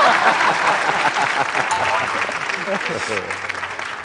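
Studio audience applauding, loudest at the start and gradually dying down, with voices mixed in.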